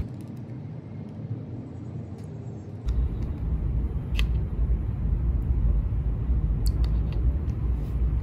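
Low rumbling background noise that sets in abruptly about three seconds in, with a few light clicks as a small plastic sample cup is handled and dipped into a tub of water.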